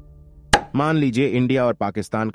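A single sharp hit, like an editing sound effect, about half a second in, followed by a narrator's voice speaking.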